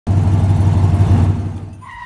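Muscle car engine sound effect, a pulsing low rumble that fades away over the second half. A short steady tone comes in near the end.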